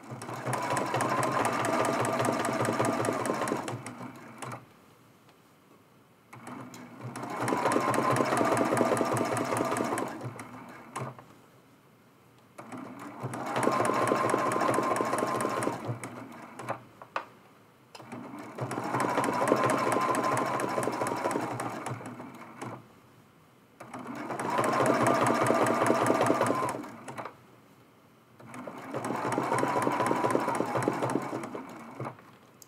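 Domestic sewing machine free-motion stitching raw-edge appliqué in short runs of three to four seconds with a steady motor whine, stopping for about two seconds between runs while the fabric is repositioned. About five runs, with another starting near the end and a couple of sharp clicks in the pauses.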